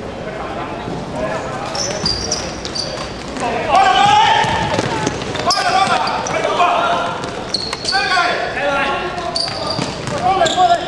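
Basketball game in a large hall: players shouting to each other, short high squeaks of shoes on the court, and a basketball bouncing, all with the hall's echo.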